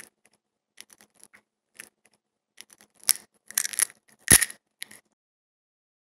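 Eggshell clicking and crackling under fingers: scattered small clicks, a denser crunchy stretch about three seconds in, and one sharp crack, the loudest sound, a little over four seconds in, with the last ticks about five seconds in.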